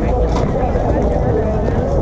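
Indistinct voices of players chatting over a steady low rumble.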